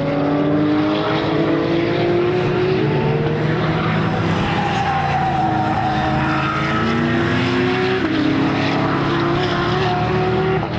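Historic Ford Falcon race car's V8 engine accelerating hard past the trackside. Its note climbs steadily, drops at a gear change about eight seconds in, then climbs again.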